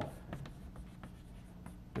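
Chalk writing on a chalkboard: a run of quiet, short taps and scratches as a few characters are written.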